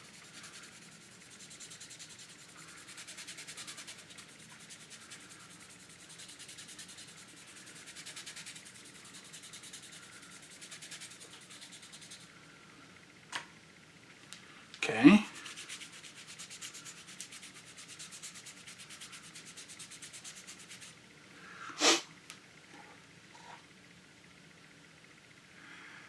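Soft, faint rubbing of a fine 8,000-grit Micro-Mesh sanding pad on the wet, soapy paint of a plastic model car body, coming in swells of strokes. It stops for a couple of seconds after about twelve seconds, then resumes. Two short, louder noises break in, one about fifteen seconds in and one near twenty-two seconds.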